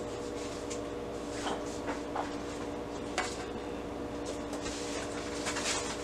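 Paper sheets being handled and laid into a metal baking pan of Kool-Aid dye, with a few light clicks and knocks against the pan, the sharpest about three seconds in, and some rustling near the end. A steady low hum runs underneath.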